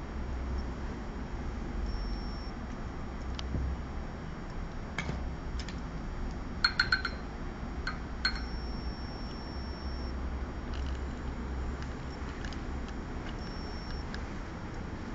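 Steady low room hum with scattered light clicks, and a quick cluster of small ringing clinks about seven seconds in, followed by one more about a second later.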